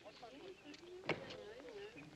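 Faint background voices with one sharp slap about a second in.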